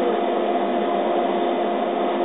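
Laser cutter running as it cuts holes in wood strips: a steady whir with a constant two-note hum underneath.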